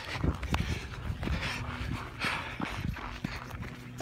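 A hiker breathing hard while climbing, with two heavier breaths, and irregular footsteps on snowy, rocky ground.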